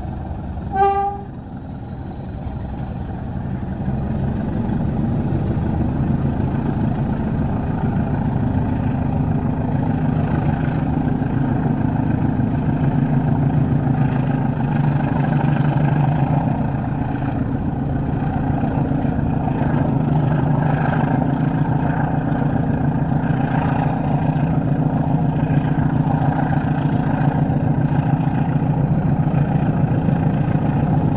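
Diesel-hauled passenger train running, heard from an open coach window: steady wheel and rail noise over the low hum of the CP class 1400 locomotive's engine, getting louder over the first few seconds as the engine works harder. A short horn toot about a second in.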